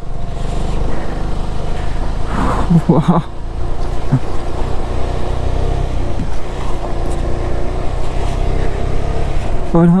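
A KTM Adventure motorcycle's engine running steadily as it climbs a rough gravel mountain road. A brief voice cuts in between about two and three seconds in.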